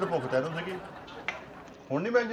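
A man speaking, then a single light clink of cutlery on a plate about a second in.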